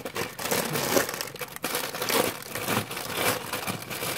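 Brown kraft wrapping paper crinkling and rustling in quick, irregular crackles as it is pulled open by hand around a parcel.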